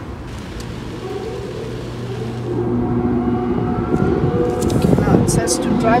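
Automatic car wash machinery running, heard from inside the car: a steady wash of noise with a machine hum of several held tones that comes in about two and a half seconds in and grows louder.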